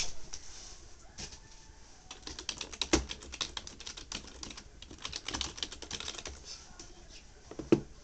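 Computer keyboard typing: bursts of rapid key clicks, with one sharper, louder knock near the end.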